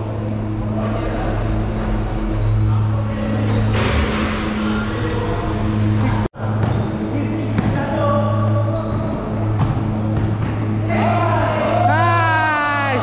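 A basketball bouncing on a hard court and players' voices, under background music with a steady low bass. The sound drops out for an instant about halfway through.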